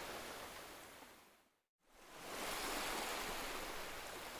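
Faint, steady rushing outdoor noise that fades out to silence about a second in and returns about a second later.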